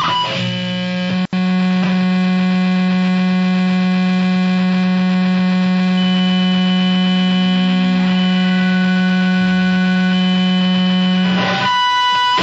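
A steady, loud buzzing drone on one low held pitch with many overtones, used as an interlude at a track change on a powerviolence album. It cuts out for an instant about a second in, and a thin higher tone joins it for a few seconds in the middle.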